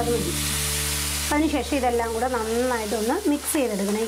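Black chickpeas sizzling as they fry in oil and spice masala in a nonstick pan, with a spatula stirring them near the end. A voice talks over the sizzle from a little over a second in.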